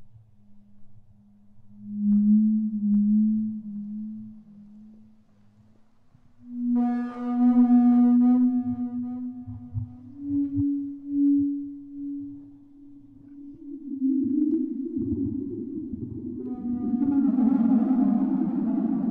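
Slow ambient music built on low sustained tones that step upward in pitch. A brighter note with overtones comes in about seven seconds in, and a denser, noisier layer swells in near the end.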